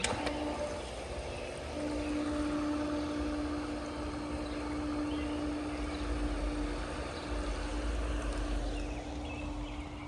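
Newly installed three-quarter-horsepower Hayward Super Pump pool pump switched on and running: a steady motor hum that comes in at the start and strengthens about two seconds in, over a steady rushing noise of water moving through the plumbing.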